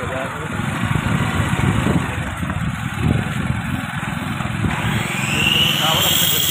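Motorcycle engine running as the bike rides along a street. About five seconds in, a high tone rises in pitch and then holds.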